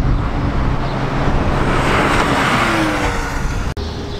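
Porsche Cayman GT4 flat-six running at speed on a track straight, passing by. The sound swells to its loudest about two seconds in, then falls in pitch as the car goes away, and it cuts off abruptly just before the end.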